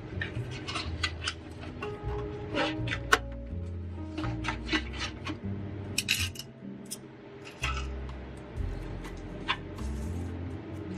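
Paperboard cake carrier box being folded and closed by hand: dry cardboard rubs, taps and clicks, with a sharp snap about three seconds in. Soft background music with low bass notes plays under it.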